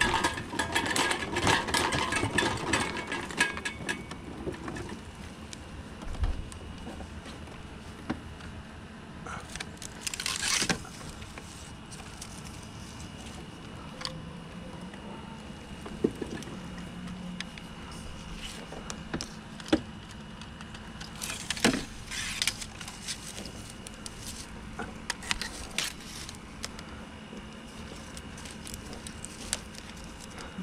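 Electric mobility scooter rattling and jolting over rough, root-strewn ground for the first few seconds, then running more quietly with a faint steady motor whine. Scattered metallic clinks and knocks come through the rest.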